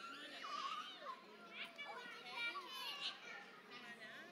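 Young children chattering over one another, many high-pitched voices overlapping.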